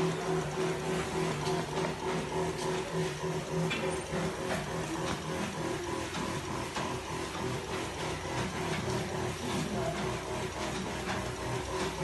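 Backpack sprayer's pump running with a steady, rhythmically pulsing hum, with a hiss of spray, as disinfectant is sprayed from the wand.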